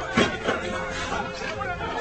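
Indistinct speech and chatter from people talking, with no clear words.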